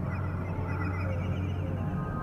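Ambient soundtrack music: a steady low drone with a rapid warbling, chirp-like figure above it.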